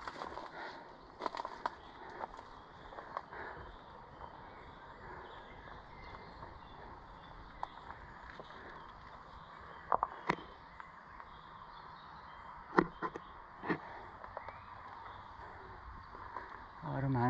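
Footsteps on loose, stony ground: scattered crunches and clicks of stones shifting underfoot over a faint steady background hiss, with a few sharper clicks in the second half.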